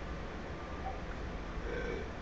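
Quiet room tone: a steady low hum and a faint even hiss, with no distinct event.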